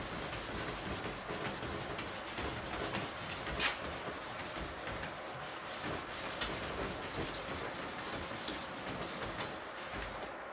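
A cloth rubbing across a whiteboard as marker writing is wiped off: a continuous scrubbing, with a few brief clicks, the loudest a little over three and a half seconds in.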